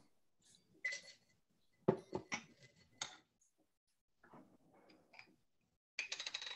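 Metal cocktail shaker tins and glassware clinking and knocking as they are handled on a bar counter, faint. There are sharp clinks about a second in and a quick run of knocks around two to three seconds in.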